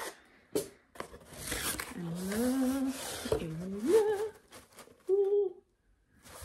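A cardboard mailer box being slit open along its sealed edge and its lid lifted, with scratchy cutting and cardboard-scraping noise and a sharp click in the first two seconds. A woman's wordless hums run over the handling through the second half.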